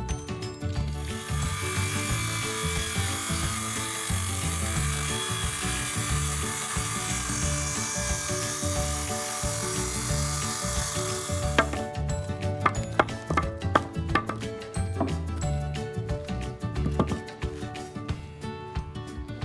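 DeWalt 20V MAX cordless circular saw cutting lengthwise along a wooden board. It runs for about eleven seconds from about a second in, then stops, followed by a few sharp knocks. Background music with a beat plays underneath.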